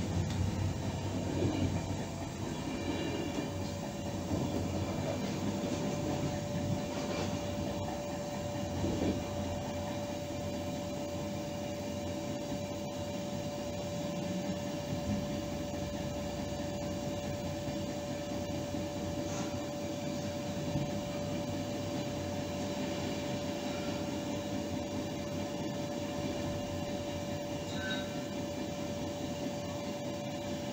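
Train running along the track, heard from the front cab: a steady rumble of wheels on rail, joined about two seconds in by a steady high whine.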